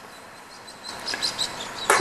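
Outdoor ambience: a steady hiss with short, high bird chirps that grow louder about a second in.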